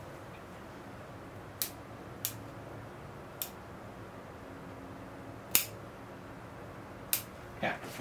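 Bonsai pruning cutters snipping small twigs off a ficus bonsai: about five sharp snips spread out over a few seconds, one a little past the middle the loudest, as a rough cut is cleaned up.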